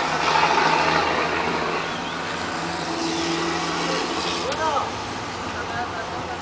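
Steady street-traffic and vehicle engine noise, with brief indistinct voices a little over halfway through.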